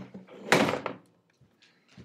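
Handling noise from a camera being moved and set in place: a short knock at the start, then a louder rustling thump about half a second in.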